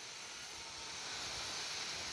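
Faint steady hiss of background recording noise, even and without distinct events.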